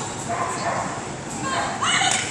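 A dog barking a few times, around the middle and again near the end, over a background of voices.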